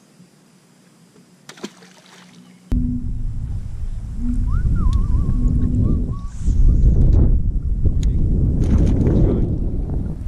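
Wind buffeting an outdoor camera microphone: a loud, low rumble that starts suddenly about three seconds in, after a quiet start with a few faint clicks.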